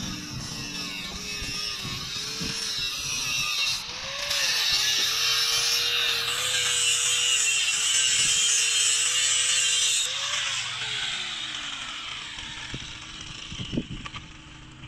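Handheld angle grinder cutting steel bar. The motor's whine dips each time the disc bites, and a loud grinding hiss runs from about four to ten seconds in. Near the end the motor winds down after it is switched off.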